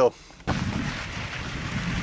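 Wind buffeting the body-mounted camera microphone, mixed with riding noise, as the mountain bike rolls along a dirt trail: a steady noisy rush that starts suddenly about half a second in, after a brief lull.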